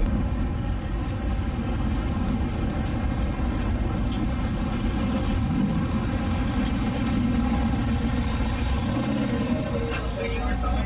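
Car engines running at low speed as cars drive slowly past, a steady engine sound that thins out in the bass briefly near the end.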